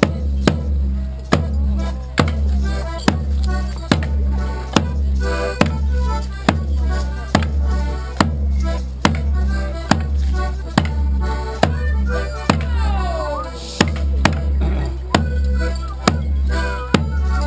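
A Border Morris band playing for the dance: a drum struck on a steady beat, a little under one beat a second, each hit booming and dying away, with a tune played over it. Sharp knocks land on the beat, among them the dancers' wooden sticks clashing.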